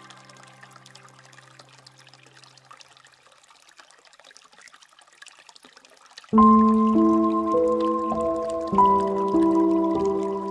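Water trickling and dripping from a bamboo fountain spout into a pool, under soft instrumental relaxation music. The music's held chord fades away over the first few seconds, leaving mostly the faint water, and a louder phrase of sustained notes comes in about six seconds in.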